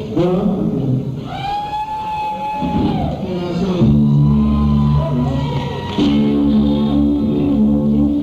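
Live band music in a hall: a voice holds one long note, then from about four seconds in a sustained chord rings on steadily.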